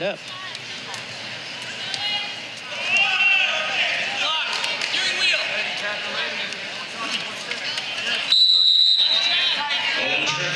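Live ambience of a wrestling bout: indistinct shouting voices and high squeaks from around the mat. About eight seconds in comes a short, steady, high whistle tone, the loudest sound here.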